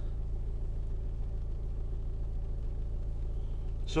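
A BMW's engine idling, a steady low hum heard from inside the cabin.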